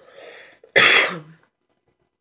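A person coughing once, loudly and close to the microphone, about two-thirds of a second in, after a short breath in.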